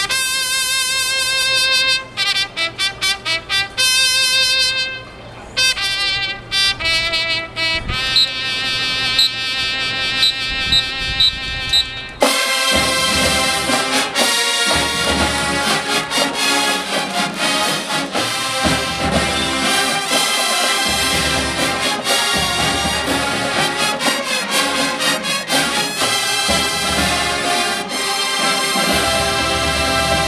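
Solo trumpet playing alone, with long held notes and quick runs of short repeated notes. About twelve seconds in, the full marching band comes in with massed brass and drums.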